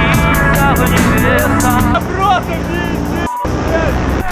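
Background rap music with vocals and a steady beat, with a brief dropout about three seconds in; a paramotor engine runs underneath.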